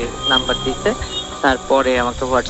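Speech: a person talking in short, continuous phrases, heard as a recorded phone call.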